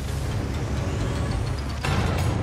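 Animated diesel locomotive sound effect: a heavy, steady low engine rumble as the engine rolls on its wheels, with a short hiss near the end.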